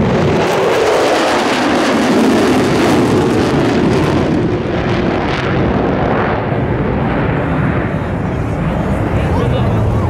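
Jet noise from the Thunderbirds' formation of F-16 fighters flying past, a loud, even rush whose high hiss dies away about halfway through.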